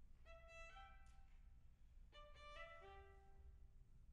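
Violins of a string quartet playing softly: two short phrases of a few held notes, the second beginning about two seconds in.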